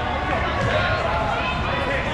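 Dodgeball players' overlapping shouts and calls in a gym hall, with footsteps on the court floor.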